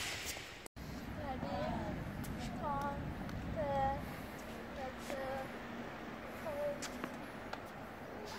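Faint, distant voices calling now and then over steady outdoor background noise, with a few faint sharp taps of tennis balls struck by rackets.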